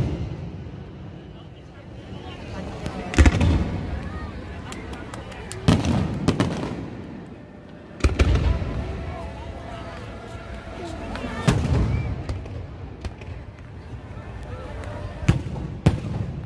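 Aerial fireworks bursting overhead: a sharp bang every two to four seconds, each followed by a long low rumble as it echoes away. Crowd voices carry on underneath.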